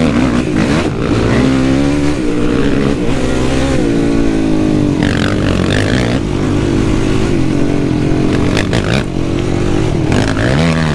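Yamaha YFZ450R quad's single-cylinder four-stroke engine running under load while being ridden, its revs repeatedly rising and falling on the break-in ride of a new engine. A few sharp clatters come near the end.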